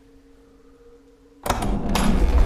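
Horror film soundtrack: a faint, low, steady two-note drone, then about one and a half seconds in a sudden loud crash that keeps going, a jump-scare hit.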